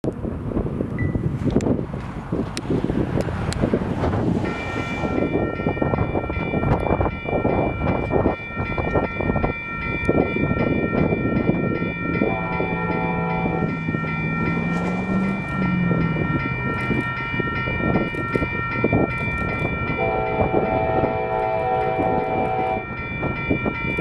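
Approaching Union Pacific freight train's locomotive horn sounding two long blasts, one about twelve seconds in and one about twenty seconds in, over a steady rumble. A steady high ringing starts about four and a half seconds in and carries on throughout.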